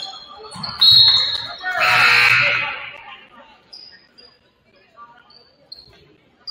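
A referee's whistle blows about a second in, a steady high note that stops play, followed by a loud burst of voices in the gym. A basketball bounces on the hardwood floor.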